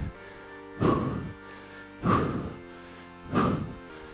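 A man's three forceful exhalations, about 1.3 seconds apart, one with each rep of a reverse lunge and front kick, over steady background music.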